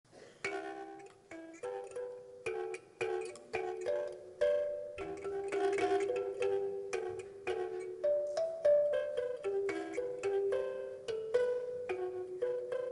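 Live jazz music: an instrument playing a run of short, struck chords in the middle register, each note fading quickly, a few to the second.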